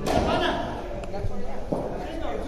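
A cricket ball struck once by a bat: a single sharp crack at the very start, ringing briefly in the large hall, with men talking in the background.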